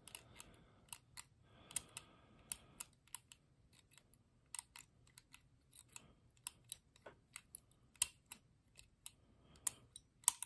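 Faint, irregular metallic clicks of a lever-lock pick and tension tool working inside an ERA Big 6 six-lever padlock, with a short scrape about two seconds in.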